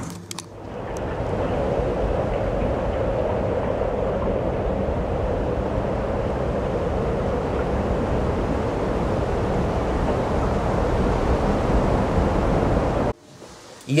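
Steady rushing wind noise, even in level, that cuts off abruptly about a second before the end.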